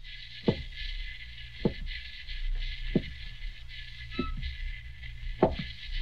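Sound-effect footsteps, slow and evenly spaced at about one every 1.2 seconds, over the steady hiss and hum of an old radio transcription.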